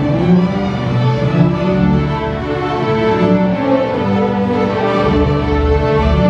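Student string orchestra of violins, cellos and double basses playing a film-score theme in sustained notes, with the low strings swelling about five seconds in.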